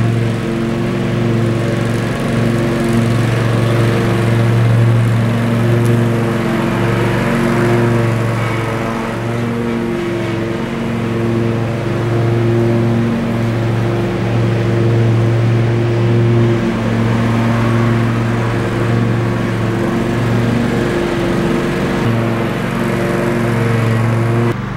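Bobcat stand-on commercial mower's engine running steadily while mowing, a continuous even engine hum.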